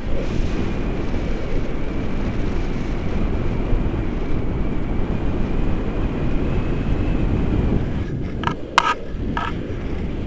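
Wind rushing over the microphone in flight under a paraglider, a steady low buffeting. A faint high steady tone runs through most of it, and a few sharp clicks come near the end.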